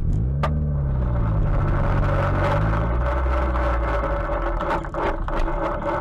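Car engine heard from inside the cabin while driving, its note dipping and rising in the first second or so, then running steadily. A single sharp click comes about half a second in.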